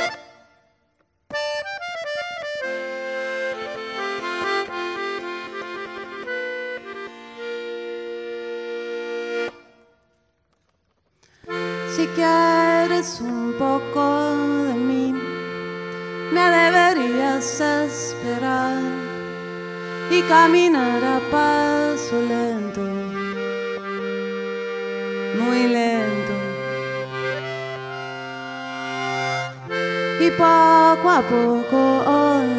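Piano accordion playing. After a brief gap it plays a quick run of notes, then held chords, then stops for a couple of seconds. It comes back with a livelier rhythmic accompaniment over alternating bass notes.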